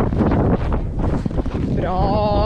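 Wind buffeting the microphone of a rider-mounted camera on a moving horse, a heavy rumble with irregular thuds of hooves on arena sand. A wavering pitched sound starts just before the end.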